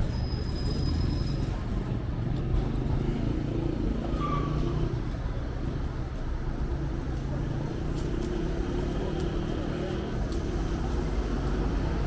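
Steady city street ambience: road traffic from cars passing along the avenue, with a low rumble throughout and a few brief faint high tones.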